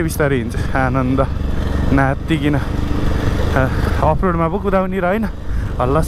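Modified Bajaj Pulsar 180 motorcycle engine running steadily while being ridden, a low rumble under the rider's talking.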